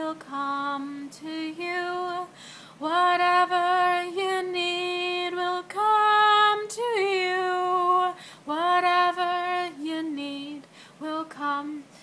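A woman singing alone without accompaniment, a slow mantra melody of long held notes that slide gently between pitches, with short breaks between phrases.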